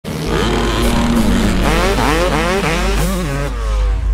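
Motorcycle engine revved up and down several times in quick rises and falls, over a steady deep rumble.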